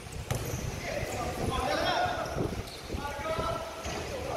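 Indoor basketball game sounds: a basketball bouncing and players' feet on the hardwood court, with a sharp thump about a third of a second in, mixed with players' voices calling out.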